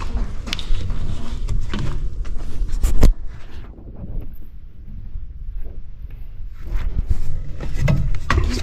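Low rumble of wind on the microphone with scattered handling clicks, and one sharp knock about three seconds in, the loudest sound; it goes quieter for a few seconds before the rumble returns near the end.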